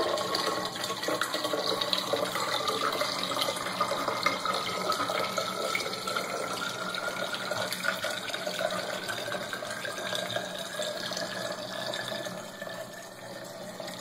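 Hydrogen peroxide pouring steadily through a plastic funnel into a two-litre plastic bottle, with a tone that rises slowly in pitch as the bottle fills. The pour thins out near the end.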